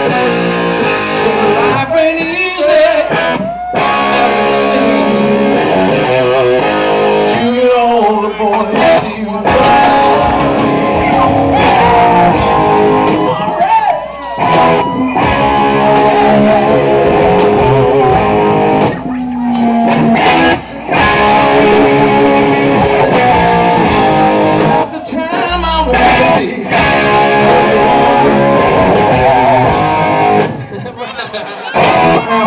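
Live rock music led by a Les Paul-style electric guitar, played loud and continuously, with a few brief drops in level.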